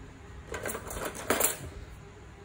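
Metal clinking and rattling as hand tools and metal parts are handled on a workbench: a light clatter about half a second in, then a louder cluster of clinks just past the middle.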